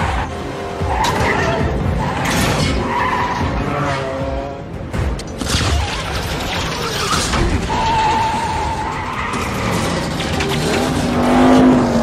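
Film-soundtrack car chase: car engines revving hard and tyres squealing, mixed with a music score. There is a long tyre squeal about eight seconds in and a loud rising engine rev near the end.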